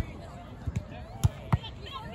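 A volleyball being played with the hands: a sharp smack of hand on ball right at the start, then a few more short slaps, the loudest about a second and a half in, with voices of players and onlookers underneath.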